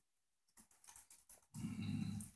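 A pause in a man's speech: a moment of dead silence, a few faint clicks, then a low vocal sound from him starting about one and a half seconds in, a hum or drawn-out 'e-e' before he speaks again.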